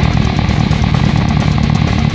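Custom six-string fretless electric bass with roundwound strings playing a fast run of low notes over a loud heavy metal band track with distorted guitars and drums.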